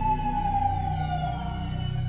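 Beat playback: a howl-like high tone with reverb slides slowly downward over deep sustained bass notes.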